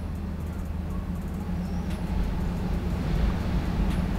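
A steady low mechanical hum with a faint hiss, holding even throughout, with no distinct sound from the glue being dabbed.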